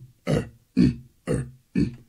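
A man's short grunts in a steady rhythm, about two a second, voicing the heavy, laboured steps of a figure too muscular to walk easily.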